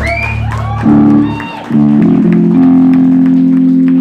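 Live rock band through a phone microphone: high sliding squeals in the first second, then the band comes in on a loud distorted chord, cuts briefly, and hits held chords again, with drums and cymbals underneath.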